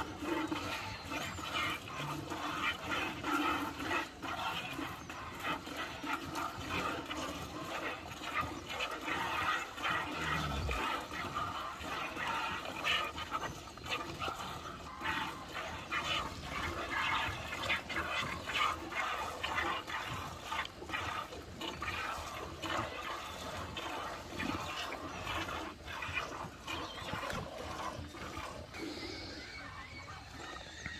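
A cow being milked by hand: quick squirts of milk streaming into a bucket, one after another in a steady run.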